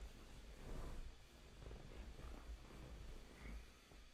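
A domestic tabby cat purring faintly as it is held up close, a soft low rumble.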